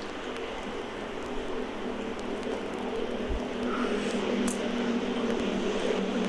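Steady motor hum over an even background noise, slowly growing a little louder.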